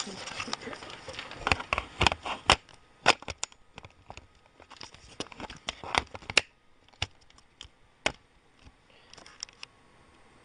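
Handling noise: irregular sharp clicks and crinkling crackles, dense for the first few seconds and thinning out after about six and a half seconds.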